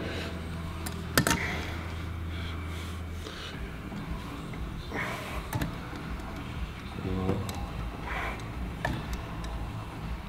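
Quiet gym room sound: a low steady hum that stops about three seconds in, with a few sharp metallic clicks about a second in as the weight's strap and metal hook are handled, then scattered faint knocks.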